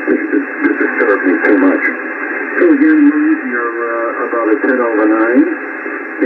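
A radio amateur's single-sideband voice signal on the 21 MHz band, received and demodulated by a software-defined radio. It is continuous talking heard through a narrow audio passband with no bass and no treble, so it sounds thin and radio-like over a steady hiss of band noise.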